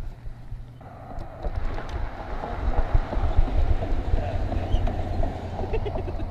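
A steady low vehicle rumble that comes in about a second in and holds until near the end.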